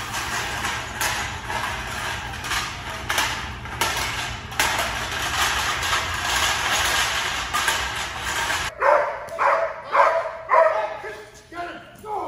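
A steady hiss with a low hum and a few knocks. After an abrupt cut, a Belgian Malinois barks about five times in quick succession, roughly one bark every half second, fading out near the end.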